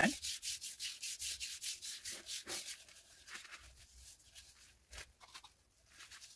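A bare hand rubbing oil along a wooden karlakattai club in quick back-and-forth strokes, about four a second, a dry hiss of skin on oiled wood that grows fainter about halfway through. A soft knock near the end.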